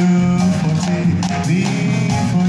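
Live jazz combo playing: plucked upright double bass, grand piano and drums, with a male vocalist singing over them.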